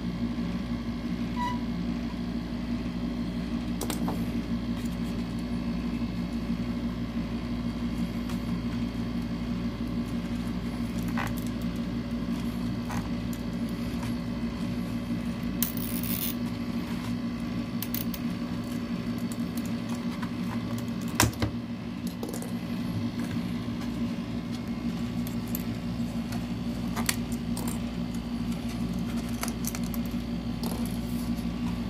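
Steady low hum with light, scattered clicks and taps from handling a plastic instrument cluster and a small needle-removal tool on a bench. One sharper knock comes about two-thirds of the way through.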